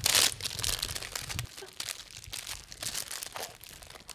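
Plastic wrappers on packaged Rice Krispie treats crinkling as they are handled and passed from hand to hand. The crinkling is densest in the first half-second, then breaks up into scattered crackles.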